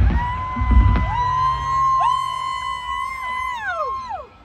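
Electric guitar holding long, steady high notes that overlap, a new one entering about one and two seconds in, each bending down in pitch and fading near the end.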